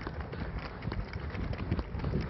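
A pair of horses trotting on a snow-covered road, their hooves striking in a quick, irregular patter of dull knocks over a steady low rumbling noise.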